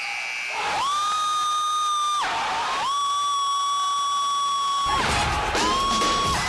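A basketball gym scoreboard buzzer sounding three times: a blast of about a second and a half, a longer one of about two seconds, and a short one near the end. A crowd starts cheering about five seconds in.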